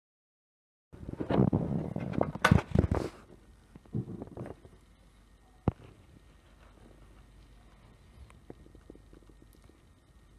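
Hands handling a steel vernier caliper on a wooden desk: a burst of rustling and clicking starting about a second in, then lighter scrapes and clicks, with one sharp click near the middle.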